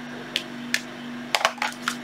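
Sharp plastic clicks and light rattles as clear acrylic case parts are handled and lifted out of a hard carry case: two single clicks in the first second, then a quick cluster of clicks a little past the middle. A steady low hum runs underneath.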